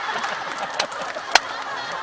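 Several men laughing hard at once, with two sharp smacks a little over half a second apart.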